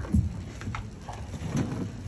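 A few dull knocks and bumps, the loudest just after the start and two softer ones later, as a person gets up from kneeling with a microphone in hand.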